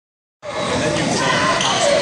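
Spectators' voices and shouts mixing in a basketball gym during play, with a basketball bouncing on the hardwood court. The sound starts about half a second in.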